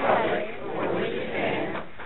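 A roomful of people reciting together in unison, voices overlapping in steady spoken phrases.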